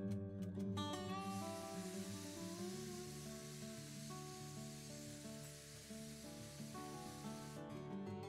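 Background music over a hiss of steam venting from a stovetop pressure cooker's whistle, starting about a second in and cutting off near the end. Each such whistle is counted to time the cooking of the dal.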